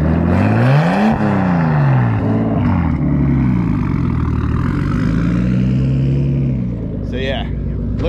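Nissan Skyline R33's straight-six engine revving through an aftermarket exhaust. It is blipped sharply up and down twice, then the revs rise more slowly and hold for a couple of seconds before dropping away near the end.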